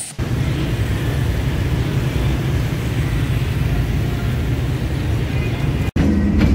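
Steady low rumble of road or rail vehicles that cuts off abruptly just before the end.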